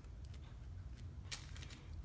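Faint handling noise with a few light clicks, one clearer just past the middle, as a small screwdriver, screws and plastic parts are handled while the angle plate is taken off a Mini 4WD chassis.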